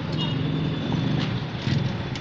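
Small motorcycle engines running in street traffic, a steady low engine hum.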